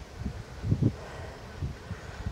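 Wind buffeting the microphone of a camera on a moving bicycle: a low, uneven rumble with a few stronger gusts, the biggest about three-quarters of a second in.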